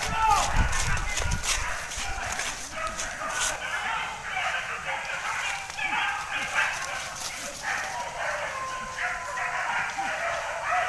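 Hunting dogs barking repeatedly while working thick brush for a wild boar, with crashing through vegetation in the first second or so.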